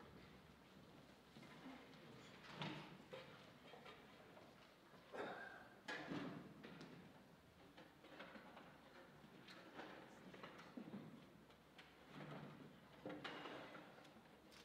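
Near silence: hall room tone with faint, scattered knocks and rustles of an orchestra settling between pieces, with chairs, stands and instruments shifting.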